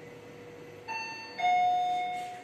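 Fujitec elevator's arrival chime, a two-note ding-dong: a higher note about a second in, then a lower, louder note that rings on and fades, signalling the car's arrival at a floor. Under it runs a faint steady hum.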